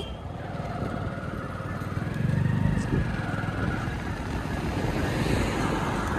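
Motorcycle engine running steadily while riding, with road noise; the low engine sound swells for a moment about two seconds in.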